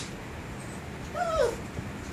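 A puppy whining once, a short whine that falls in pitch, about a second in: a jealous dog crying for attention while another dog is being cuddled.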